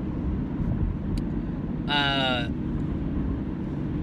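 Steady low rumble of road and engine noise inside a moving car's cabin. About halfway through, a short falling-pitched tone lasts about half a second.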